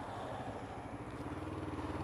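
Motorcycle engine running steadily under way, with wind and road noise, as heard from the rider's helmet.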